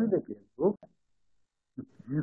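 Speech only: a man's voice over a video call trails off, gives one short syllable, then a second of dead silence before he starts speaking again near the end.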